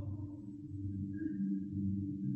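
Faint, steady low hum made of a few held tones in a pause in the speech.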